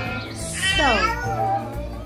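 A single high-pitched voice-like call about half a second in, sliding steeply down in pitch, over steady background music.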